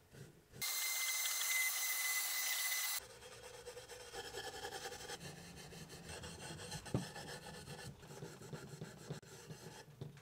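Fine steel wool scrubbing the lead-free solder seams of a stained glass box, stripping off a dark copper patina and flux residue. A loud hissing stretch with a faint whine comes in the first few seconds, followed by quieter, uneven rasping strokes.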